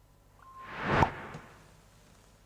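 Transition sound effect: a whoosh that swells over about half a second to a sharp hit about a second in, then fades quickly.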